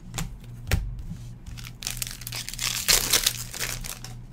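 Trading cards being handled and sorted by hand: two light clicks early on, then a crinkling, rustling shuffle through the last two seconds.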